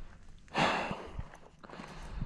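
A single breathy exhale, like a sigh, about half a second in and fading over half a second, followed by a few faint knocks.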